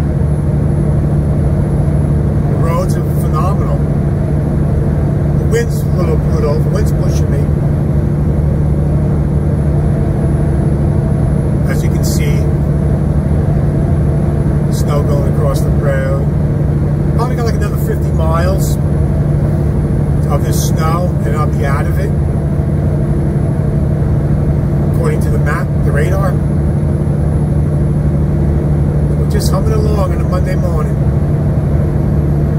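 Cab interior of a Peterbilt 579 semi-truck at highway speed: a steady, loud engine and road drone with a strong low hum, running unchanged throughout.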